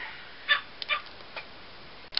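A dog giving a few brief yips, the first about half a second in and the loudest, with fainter ones following over the next second.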